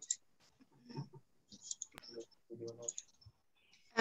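Faint, low man's voice speaking over an online video call, with one sharp click about halfway through.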